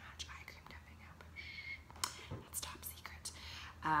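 Light clicks and a short scraping squeak of small plastic skin-care containers being handled, a jar lid being twisted.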